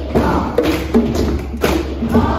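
Hand drums (djembe and small hand drums) beating a steady pulse of about two beats a second, with a children's choir clapping and singing in time.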